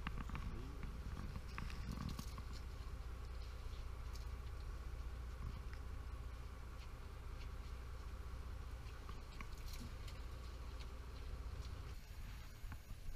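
Steady low drone of a boat's machinery running, with scattered faint clicks and taps on deck, a few more in the first two seconds.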